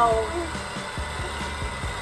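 Little Tikes STEM Jr. Tornado Tower toy's motor running, spinning the water inside into a vortex. It gives a steady low hum with faint, irregular ticking.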